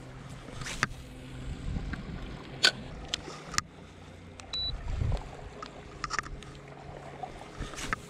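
Electric trolling motor running with a low steady hum. A short high beep from its handheld remote comes about halfway through, and a few sharp clicks from handling rod and gear are scattered through the first half.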